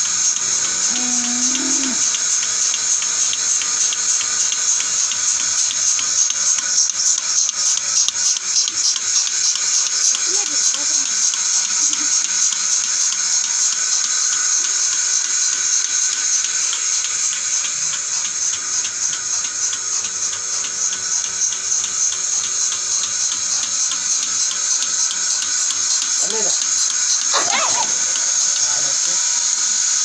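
Fixed-pipeline bucket milking machine running while milking a cow: a steady high hiss from the vacuum line with a rapid, regular pulse through it.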